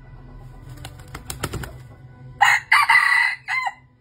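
Red junglefowl rooster crowing once: a short, clipped crow in three parts that ends on a curled note. It comes about a second after a quick flurry of wing flaps.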